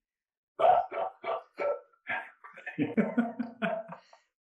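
Men laughing heartily over a video call: after a brief silence, a loud run of short ha-ha pulses about half a second in, then lower, longer laughter near the end.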